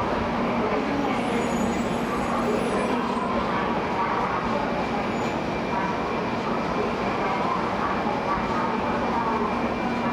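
Steady hum of 700 series Shinkansen trainsets standing at the platform, under the even background noise of the station with distant voices.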